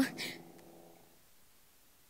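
The end of a woman's spoken or sung line fading out in the first half second, then near silence: faint outdoor ambience.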